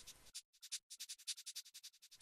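Near silence, with only a faint, rapid, high-pitched ticking.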